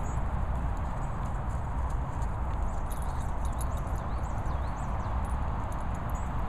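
Steady outdoor noise with a heavy low rumble, typical of wind buffeting the camera microphone, with a few faint high chirps in the middle.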